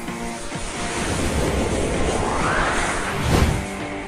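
A swooshing transition sound effect over background music: a noisy swell rises in pitch for about two seconds and ends in a short whoosh a little past three seconds in.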